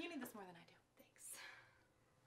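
The tail of a woman's laugh falling in pitch, then a soft breathy exhale about a second later, fading to near silence.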